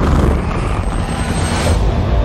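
Cinematic sound effects: a loud, deep, pulsing rumble that opens on a hit, with a rushing whoosh that swells and fades about a second and a half in.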